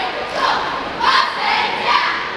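A cheerleading squad shouting a chant in unison, several short shouted phrases in quick succession.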